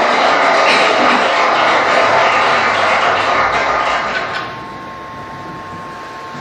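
Soundtrack of a projected video played over the room speakers: music mixed with dense background noise. It stops about four and a half seconds in, leaving a quieter steady hum with a thin tone.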